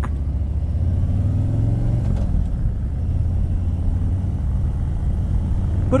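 Harley-Davidson Street Glide's Milwaukee-Eight 107 V-twin running under way, a steady low rumble, its pitch rising faintly over the first couple of seconds.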